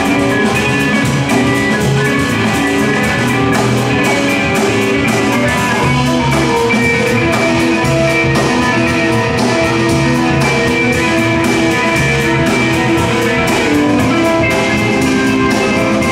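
Jazz band playing live: electric guitar, double bass and drum kit with steady cymbal and drum strokes under sustained melodic notes.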